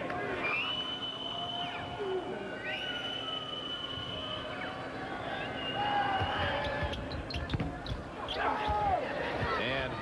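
Arena sound of a basketball game in play: the ball bouncing on the hardwood against steady crowd noise. Three drawn-out high steady tones sound in the first half and again about six seconds in.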